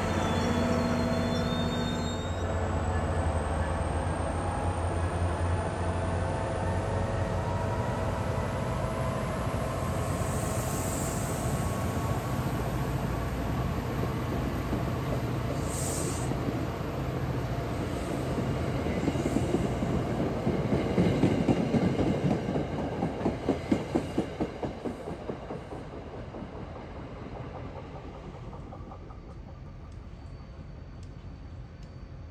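MBTA Commuter Rail passenger train rolling past at track speed, its coach wheels clicking over rail joints. The clicking grows loudest a little past the middle, then fades as the train moves off.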